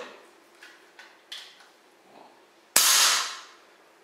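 Single shot from a Hatsan AT-P1 5.5 mm PCP air pistol: a sharp report a little under three seconds in that dies away over most of a second, after a few light handling clicks.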